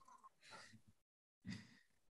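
Near silence on a video-call line, broken by two faint, brief sounds about half a second and a second and a half in, with stretches of dead silence between them.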